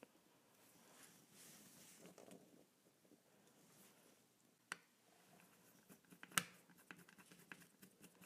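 Near silence, broken in the second half by a few faint, sharp clicks of a small precision screwdriver against a plastic key fob as its tiny cover screws are driven back in; the sharpest click comes about six and a half seconds in.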